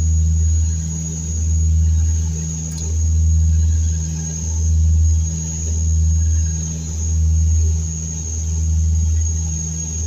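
Cockpit noise of a Dash 8 Q200's twin Pratt & Whitney PW123 turboprops and propellers in flight: a loud, deep drone that swells and fades about once every one and a half seconds, the beat of the two propellers turning at slightly different speeds, with a thin steady high whine over it.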